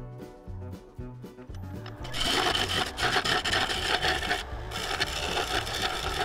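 Background music; about two seconds in, a bowl gouge starts cutting into the spinning River Sheoak bowl blank on a wood lathe, a rough scraping hiss with a short break partway. The gouge's wing has gone blunt and is running hot, in need of a sharpen.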